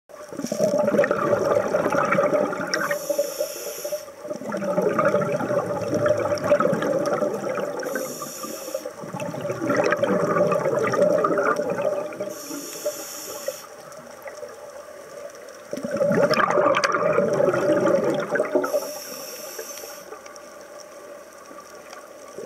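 Scuba diver breathing through a regulator underwater: four long bubbling exhalations, each followed by a short high hiss of inhalation, in a slow cycle every four to five seconds.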